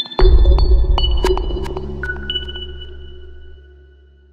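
Electronic intro jingle for a logo ident: a deep bass hit about a quarter second in, with high pinging chime notes and a few sharp clicks over it. The whole sting fades steadily away.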